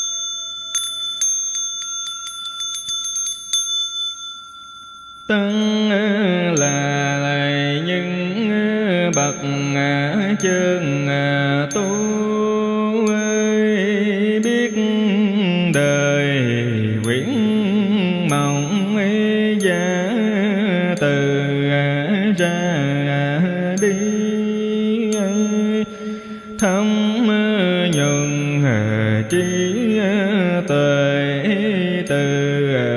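A Buddhist bell struck once, ringing and fading away. From about five seconds in, a monk's voice chants Vietnamese Buddhist liturgy in a slow, melodic recitation over a steady beat of light ticks.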